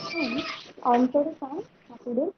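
A woman's voice reciting Bengali verse slowly, with drawn-out syllables that bend in pitch.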